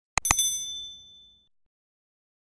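Subscribe-button animation sound effect: two quick mouse clicks, then a bright notification-bell ding that rings and fades away within about a second.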